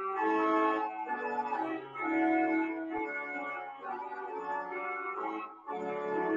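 Organ playing a hymn in held chords that change every second or so, with short breaks between phrases.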